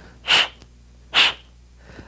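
Two quick, sharp sniffs, a little under a second apart.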